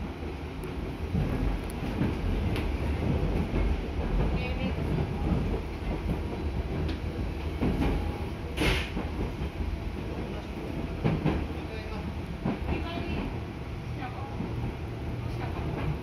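Cabin noise inside a moving JR Central 211 series electric train: a steady low rumble of wheels and running gear, with irregular clicks of the wheels on the rails and one louder, sharper noise about eight and a half seconds in.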